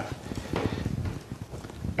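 Quiet, irregular light taps and clicks.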